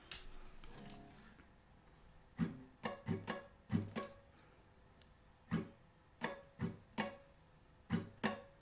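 Acoustic guitar with a capo on the fourth fret, strummed slowly in separate down and up strokes to show a strumming pattern. It opens with a faint fading ring, then the strums come about two and a half seconds in, roughly one or two a second with short gaps between them.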